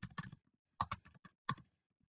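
Typing on a computer keyboard: faint keystroke clicks coming in short, irregular clusters.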